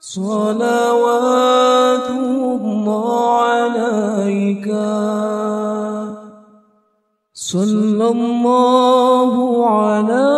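Unaccompanied voice singing an Arabic sholawat in long, held, wavering notes with no instruments. One phrase lasts about six and a half seconds, there is a short break, and a new phrase begins about seven and a half seconds in.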